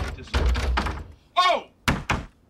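Heavy thuds and rattling against a closed wooden door, with a sharp knock near the end. A short rising-and-falling vocal cry comes about a second and a half in.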